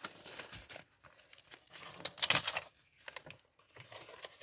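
Paper banknotes and clear plastic binder envelopes rustling and crinkling as they are handled, with a louder burst of crinkling about two seconds in.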